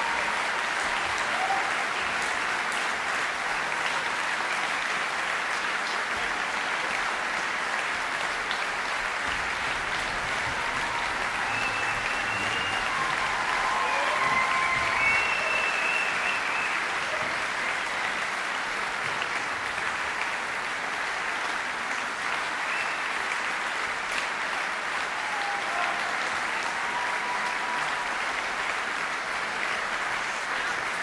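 Large audience applauding steadily in a concert hall.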